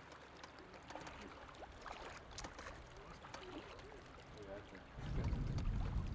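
Faint small splashes and trickles of river water around a pontoon boat, with a low rumble coming in about five seconds in.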